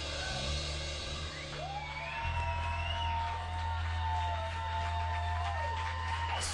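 Live rock band's instruments sounding between songs: a steady low bass drone that shifts about two seconds in, joined by long held notes that bend slightly in pitch, with faint crowd noise.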